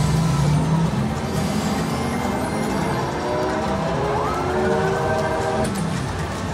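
Video slot machine's electronic reel-spin sounds during a respin, with a rising electronic tone building from about halfway through and breaking off near the end, over a low steady hum.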